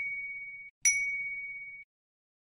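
Notification-bell 'ding' sound effect of a subscribe-button animation, played twice. It is one clear high tone with a sharp start. The first is already ringing at the start and the second comes about a second in; each fades for about a second and is then cut off abruptly.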